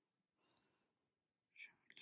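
Near silence: room tone, with one softly spoken word near the end.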